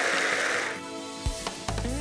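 Audience applause fading out in the first second, then a television programme's opening theme music starting with a sharp hit and coming in with a steady bass line and beat near the end.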